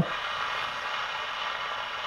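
Six-transistor pocket AM radio tuned near the bottom of the band with no station coming in, its speaker giving a steady hiss of static.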